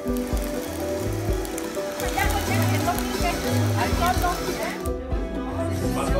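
Background music with a pulsing bass line and a singing voice. A steady hiss lies under it and drops out about five seconds in.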